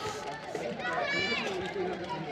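Several voices calling out across a football pitch, with one high-pitched shout about a second in.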